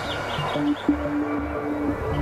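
Background music: a long held note over a slow, pulsing bass.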